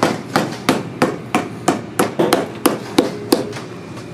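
Hand hammer striking the sole of a boot held upside down, a steady run of about three blows a second that stops a little after three seconds in.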